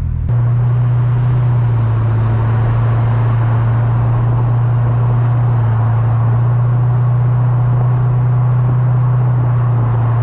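A Corvette C6 Grand Sport's 6.2-litre LS3 V8 drones steadily at cruise, heard from inside the open convertible over wind and road noise. The engine note steps up slightly less than half a second in and then holds steady.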